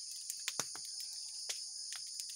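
Steady high-pitched chorus of crickets, with scattered sharp crackles and pops from an open fire of coconut shells burning under a copra drying rack.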